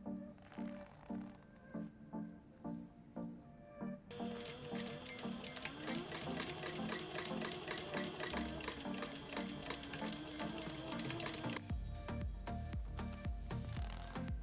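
Background music with a steady beat, and over it a sewing machine running in a fast even stitch through denim for several seconds in the middle, stopping shortly before a heavier bass beat comes in near the end.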